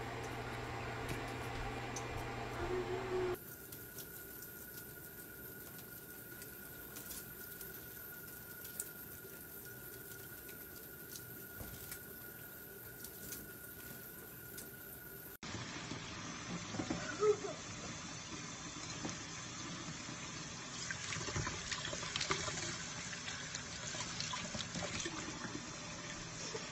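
Pet parrots bathing in water. First a budgie splashes in a steel bowl over a low hum. After an abrupt change about three seconds in, a tap runs in a steady hiss into a stainless steel sink over a bathing conure, and after a second abrupt change near the middle there is brisker splashing with many small clicks.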